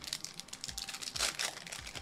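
Foil wrapper of a Topps Chrome baseball card pack crinkling and crackling as it is torn open by hand, a quick irregular run of crackles.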